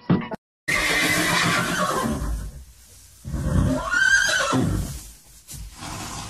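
Two long animal calls after a brief silence: the first, about half a second in, slides down in pitch, and the second, a little past the midpoint, rises and then falls.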